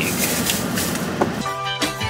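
A steady rushing noise, then background music begins about one and a half seconds in with held notes.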